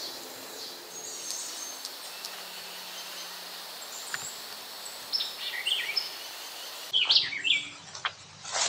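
Birds calling in woodland: scattered short high chirps, then a few quick descending call notes, and a louder burst of short calls near the end.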